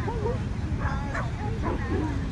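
Dogs giving short, high barks and yips, a couple about a second in and another near the end, over a steady low rumble of wind on the microphone.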